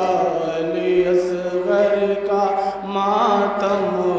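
A man chanting a noha, a Shia lament, solo in a long melismatic line, holding drawn-out notes with a wavering pitch and gliding between them.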